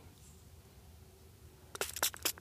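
Quiet background with a faint low hum. Near the end come a few short clicks and scrapes of fingers handling a freshly dug coin.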